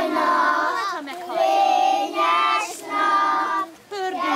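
A group of young children singing together in unison, long held notes in short phrases with brief breaks between. It is an action song sung to call out the sun in rainy weather.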